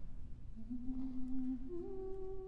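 A children and youth choir opening softly with a sustained hummed note that steps up to a higher held note near the end.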